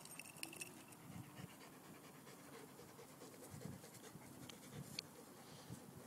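Faint panting of a dog, out of breath from rough play, with a few faint clicks and soft thumps.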